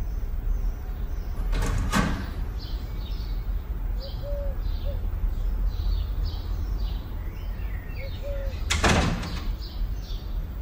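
A house door moving, heard twice as a brief sweep, about two seconds in and again near the end. Small birds chirp throughout over a steady low hum.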